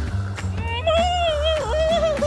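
An animated character's long, wavering high-pitched vocal cry, starting about half a second in, over background music with a steady low bass.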